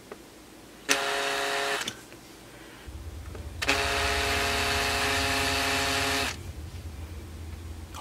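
Cordless drill running slowly in two short bursts, about a second near the start and then about two and a half seconds in the middle, as the bit drills into the moulded plastic button blank of a multimeter's front panel.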